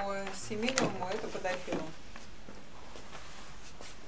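A woman's voice speaking briefly, then quiet room tone with a few faint clicks.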